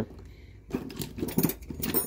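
Metal hand tools (wrenches and pliers) clinking and rattling against each other as a hand rummages through a steel tool cart drawer, starting about two-thirds of a second in.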